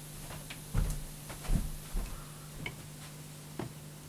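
Handling noise: about five soft, irregular knocks and clicks as a plastic CD jewel case is moved about and brought up close, over a faint steady low hum.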